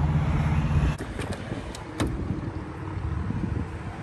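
A vehicle engine idling with a steady low hum that cuts off about a second in, followed by a quieter stretch of wind on the microphone with a few sharp clicks.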